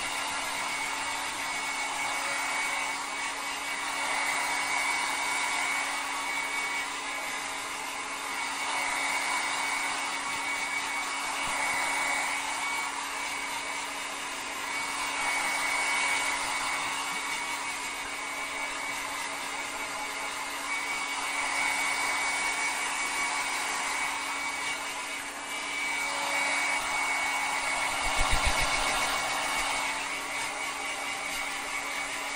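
Handheld hair dryer blowing hair dry: a steady rush of air over a constant hum and a thin high whine, swelling and fading every few seconds as it is moved about. A brief low bump near the end.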